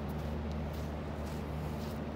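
Steady low-pitched hum of the indoor room's background noise, with a few faint light ticks scattered through it.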